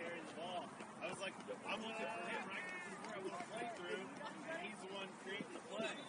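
Distant shouts and calls from several players and spectators at a soccer match, overlapping, with no clear words.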